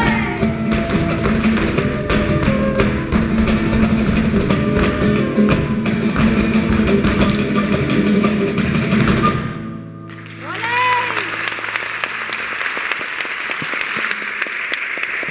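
Live flamenco music with guitars, hand percussion and sharp rapid strokes of the dancers' footwork. It ends abruptly about two-thirds of the way through. After a brief lull, an audience breaks into applause, with a few shouts.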